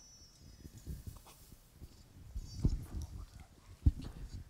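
Handheld microphone handling noise: low rustling and bumps as it is picked up and moved, with a louder thud about two and a half seconds in and a sharp knock near the end.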